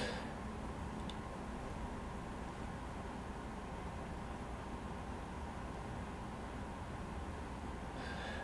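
Steady low room hum and hiss with no distinct sound events; the soft seedling plugs being set into the plastic holder make no clear sound.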